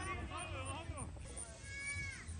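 Unclear shouts and calls from soccer players, ending in one long high-pitched call that falls away at the end.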